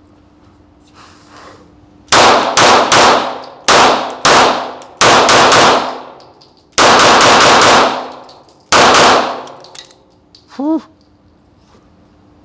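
Archon Type B 9mm pistol fired in short strings of two to five quick shots, about a dozen in all, each shot ringing off the concrete walls of an indoor range. The shooting stops about nine seconds in.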